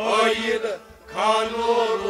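A man singing a Kashmiri Sufi kalam in long, chant-like phrases, two phrases with a brief break about a second in, over a steady sustained accompaniment.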